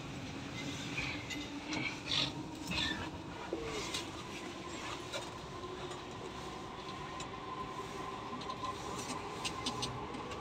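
Interior of a JR East E231-1000 series electric commuter train car pulling away: a steady hum with a thin tone that starts rising in pitch near the end as the train begins to accelerate. A few rustling knocks come in the first few seconds.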